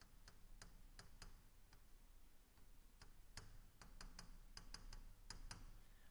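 Faint, irregular clicks and taps of a pen on a writing surface as words are written by hand, a few a second, coming more often in the second half.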